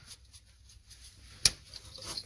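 A single sharp click about one and a half seconds in, against faint close handling noise.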